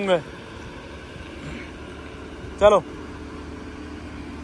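Lamborghini Huracán's V10 engine running steadily at low revs, a low hum, as the car creeps forward through a slow turn.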